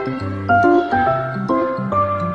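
Background music: a steady melody over a bass line, with notes changing a few times a second.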